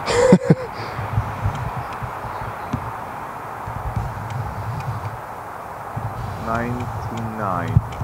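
Steady outdoor background noise over an unsteady low rumble, typical of wind on the microphone. A short laugh comes at the very start, and a man murmurs briefly about a second before the end.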